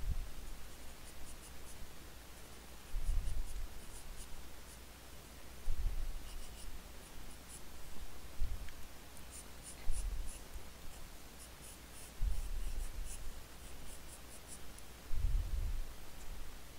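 Graphite pencil drawing on paper: clusters of short, light scratchy strokes, with a dull low thump every two to three seconds.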